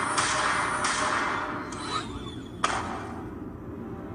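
Cartoon soundtrack sound effects: loud bursts of rushing noise in the first two seconds, then a sharp hit about two and a half seconds in, after which it quietens.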